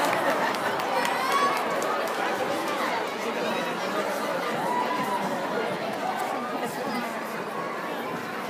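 Crowd chatter in a gymnasium: many spectators talking at once, slowly dying down.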